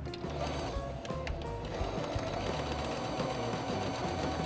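Singer Patchwork electronic sewing machine running steadily, stitching a seam through layers of fabric.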